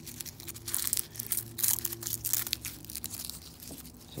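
Papery skins of a hardneck garlic bulb crinkling and tearing in irregular crackles as the cloves are pulled apart by hand, with a low steady hum underneath.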